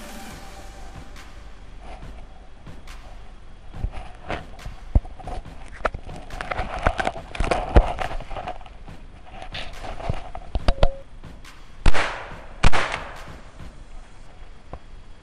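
Rustling, crackling and snapping of twigs and branches as someone moves through dense brush, then two loud shotgun shots less than a second apart near the end.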